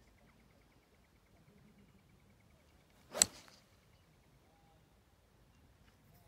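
A utility driving iron strikes a golf ball off the fairway turf with a single sharp crack about three seconds in. It is a clean strike, flushed off the middle of the clubface.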